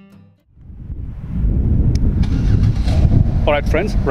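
Wind buffeting the camera microphone outdoors: a loud, uneven low rumble that builds up within the first second or so and carries on, with a man's voice starting over it near the end.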